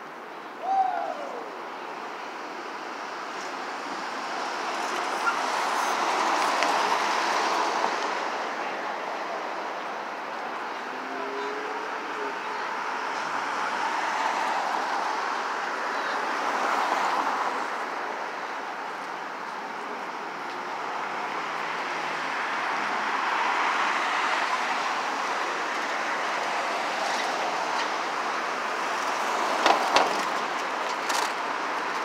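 Street traffic: vehicles driving past close by, the noise swelling and fading as each one passes, with a short loud falling sound about a second in.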